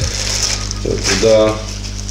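A man's voice speaking briefly about a second in, over a steady low hum.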